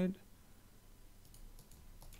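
A few faint, short clicks of a computer keyboard and mouse, heard over quiet room tone, a little past the middle.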